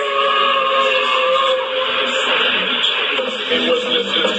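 Narrow-band, radio-like music with voices mixed in, as from a played-back video soundtrack; held tones in the first second and a half give way to busier, speech-like sound.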